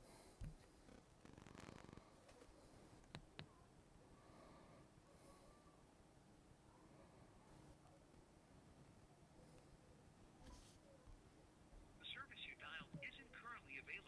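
Near silence with a few faint taps early on; about twelve seconds in, a faint, thin voice starts coming through a smartphone's ear speaker on the call. It is very quiet even at full call volume, because the ear speaker's grill holes are clogged with earwax and dirt.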